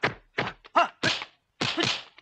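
Kung fu film fight sound effects: a quick run of punch and block impacts, about half a dozen in two seconds, with a short pause about a second and a half in.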